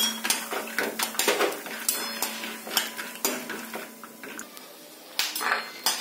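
A metal slotted spoon scraping and clinking against a steel kadhai as peanuts are stirred and scooped out while they roast. It makes quick clatters for the first few seconds, goes quieter, and a few knocks follow near the end.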